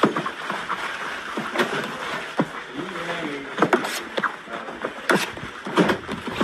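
Scattered sharp knocks and slaps as lumps of bread dough are cut with a knife and dropped onto a kitchen scale on the work table, with voices talking in the background.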